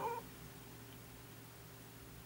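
A pause in a man's speech: a word trails off at the start, then faint room tone with a steady low hum.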